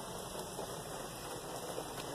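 Steady rain falling on a car's roof, heard from inside the cabin as an even hiss.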